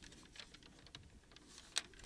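A few faint, irregular clicks over quiet room tone.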